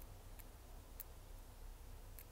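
Faint, light ticks of the metal tweezer tip picking at loose shards of the cracked cover glass along the edge of an Apple Watch Series 5 screen: a few small clicks, the clearest about a second in, over quiet room tone.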